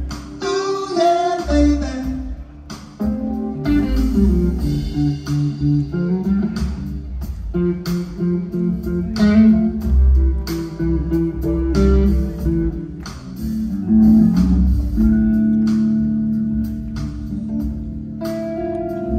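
Live rock band playing: guitar lines over bass and drums, ending on a long held note in the last few seconds.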